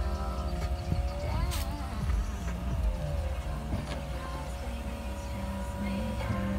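Mitsubishi Eclipse Spyder's power soft top running as it lowers, a steady motor whine that shifts pitch a couple of times, with music playing.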